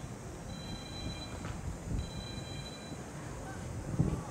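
Shooting-range acoustic signal sounding twice, each a long, steady, high tone about a second long with a pause between. These are the last two of three signals, the archery cue for archers to go to the targets to score and collect arrows. Under it is a steady low background rumble.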